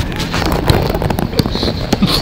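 Pickup basketball on a hard outdoor court: irregular sharp knocks of the ball and feet striking the court, about five in two seconds, over a rushing noise.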